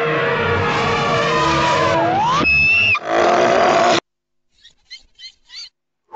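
Cartoon sound effects: a cockroach's loud, drawn-out cry with sliding pitch, then a short whistle-like tone and a burst of noise that cut off suddenly about four seconds in, followed by a few faint chirps.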